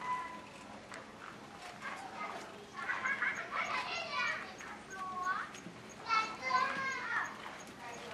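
Children's voices, high-pitched calls and chatter, starting a few seconds in, breaking off briefly, and coming again near the end.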